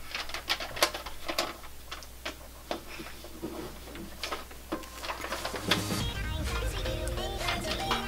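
Scattered light clicks, knocks and rustles of hands working inside a plastic reptile enclosure, lifting a snake out. Background music with a steady bass comes in a little past halfway.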